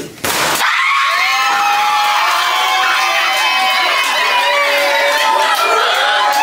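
A large gender-reveal balloon bursts with a bang about half a second in, and a room full of people then screams and cheers without a break.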